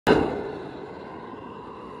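Diesel-fired Baby Godzilla burner heating a foundry, running with a steady rushing noise and a faint steady whine. It comes in abruptly loud at the start and eases down within about half a second.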